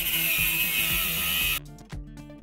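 Angle grinder cutting through steel wire mesh: a loud, high grinding for about a second and a half that cuts off suddenly. Background music plays underneath.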